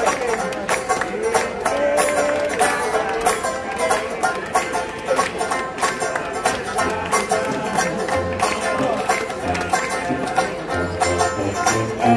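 Live traditional jazz band playing an up-tempo tune on trumpet, tuba, trombone, clarinet and banjo, with a steady strummed beat.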